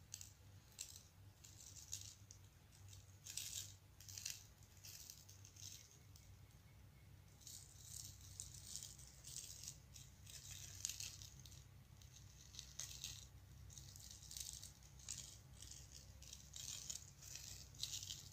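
Iron filings shaken from a small container and sprinkled onto a clear sheet, coming in faint, short, irregular bursts of light rattling patter.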